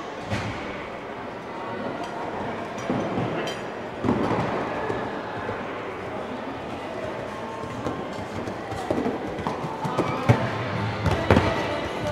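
A horse's hoofbeats on sand arena footing as it lands from a jump and canters on, with a louder thud about a third of a second in and more thuds near the end. Music is playing in the hall.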